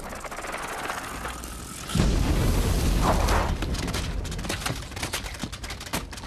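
Film explosion effect: a rushing build-up, then a loud boom about two seconds in with a long rumble, followed by scattered pieces of debris pattering down near the end.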